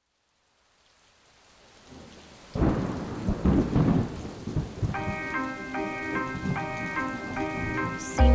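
Thunderstorm sound effect: rain hiss fading in from silence, then heavy rolling thunder rumbles from about two and a half seconds in. About five seconds in, a repeating melodic figure of sustained pitched notes enters over the storm as the song's intro begins.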